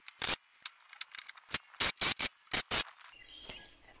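A run of short, sharp, irregular clicks and knocks from carpentry work on wooden wall framing, about a dozen in three seconds, with a faint hiss near the end.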